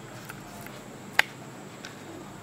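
A single finger snap, one sharp click about a second in, against quiet room tone.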